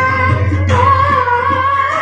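A woman singing a Bengali devotional song, holding long notes with a step up in pitch partway through, over harmonium and tabla accompaniment.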